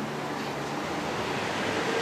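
Steady hiss of room background noise with a faint low hum.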